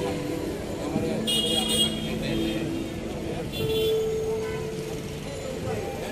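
Crowd chatter on a busy street, with vehicle horns sounding several long held toots at different pitches.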